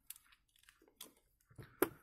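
Faint handling of a plastic half tube, bottle cap and screwdriver: a few light clicks and crinkles, with one sharp click near the end.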